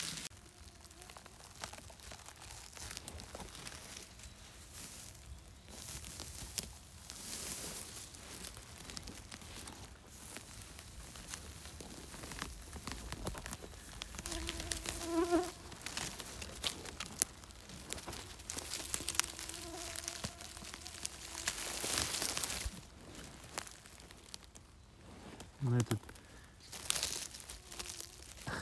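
A flying insect buzzing close by: a steady pitched hum that comes in about halfway through and again a few seconds later. Behind it, rustling and crackling of needle litter and moss as a mushroom is taken in hand.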